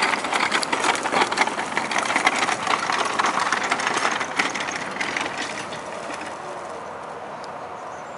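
Small wagon's wheels rolling and crunching over gravel as a miniature horse pulls it, mixed with hoof and footsteps on the gravel. The crunching is loud for the first few seconds and eases off about five seconds in.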